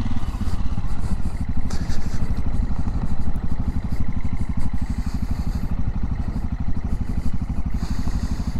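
Motorcycle engine running steadily at low revs while the bike is ridden slowly, its firing pulses even throughout, with a few brief rushes of noise over it.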